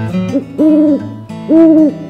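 Owl hooting: two long, loud hoots about a second apart, each steady in pitch, after a shorter, softer one.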